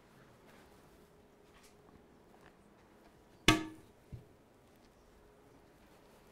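One sharp knock with a brief ring about halfway through, followed by a faint second knock, over quiet room tone.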